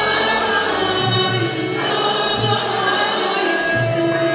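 Turkish folk song performed live: a woman soloist singing with choir voices and bağlama (long-necked saz) accompaniment, with low beats underneath.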